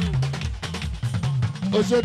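Live Fuji band music: busy drums and percussion over a moving bass line, in a short gap between the lead singer's lines. The voice comes back in near the end.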